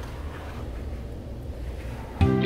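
Low, steady background rumble with a faint even hiss.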